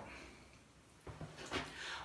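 Near silence: room tone, with a few faint short sounds in the second half.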